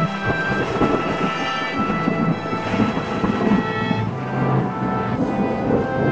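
Thunder rumbling and rolling in repeated swells, under background music with long sustained tones.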